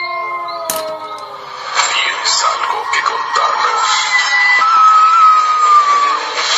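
Radio station break: music with a sung or synthesized voice, getting louder about two seconds in.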